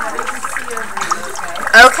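Steady trickle of running water draining from a tub of flooded gravel into a bucket, with faint chatter behind it; a voice begins near the end.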